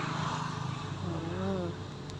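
A steady low hum with a noisy rush, and a brief faint voice about halfway through.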